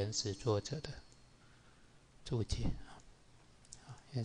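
A few clicks from working a computer, heard between short bits of a man's speech.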